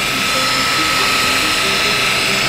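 DeWalt rotary polisher running at a steady speed with a foam cutting pad pressed flat on car paint, a steady whine. This is the cutting stage of paint correction, taking scratches out of the clear coat.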